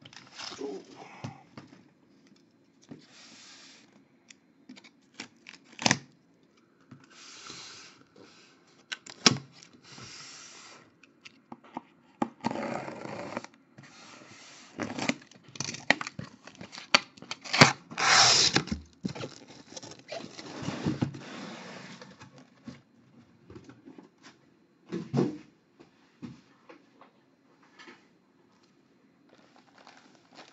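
A sealed cardboard shipping case being opened by hand: packing tape tearing, cardboard flaps scraping and rustling, with a few sharp knocks. The sounds come in irregular bursts, and the loudest comes about eighteen seconds in.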